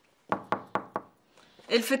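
Four quick knocks on a panelled wooden door, about four a second, followed by a woman's voice calling out.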